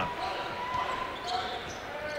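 A basketball being dribbled on a hardwood court, under the steady murmur of an arena crowd.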